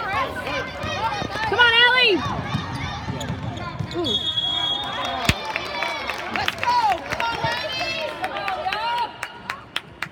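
Youth basketball game in a large indoor arena: high-pitched shouts, a basketball bouncing on the hardwood, and sneakers squeaking. A referee's whistle sounds for about a second around four seconds in, followed by a sharp thud of the ball.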